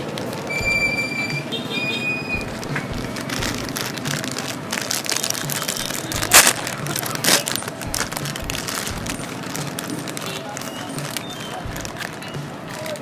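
Plastic bag of prawn crackers crinkling and rustling as it is handled and opened, with two loud sharp crackles a little past the middle. Music with a steady beat plays in the background.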